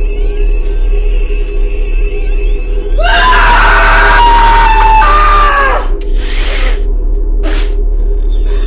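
A group of people scream in shock for about three seconds, starting about three seconds in, over steady background music. Two short bursts of noise follow.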